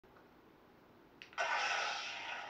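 Crossguard lightsaber's sound board playing its ignition sound through the hilt speaker: a faint click, then a sudden loud ignition about one and a half seconds in that carries on as the blade's running sound.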